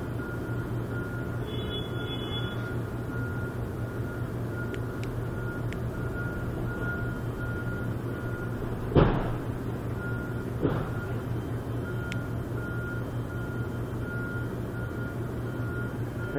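Late-night supermarket loading-area noise: a steady low drone of engine or machinery, with a high electronic beeper repeating about twice a second that stops for a few seconds in the middle. Two sharp bangs about nine and ten and a half seconds in, the first the loudest sound.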